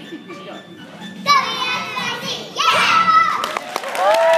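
Group of young children's high-pitched voices calling or singing out loudly in a large hall. It starts with a soft murmur, then comes a loud phrase about a second in and another, with gliding pitch, about halfway through.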